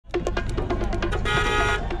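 Street traffic with a car horn sounding once, for about half a second, a little past halfway, over music and a run of quick clicks.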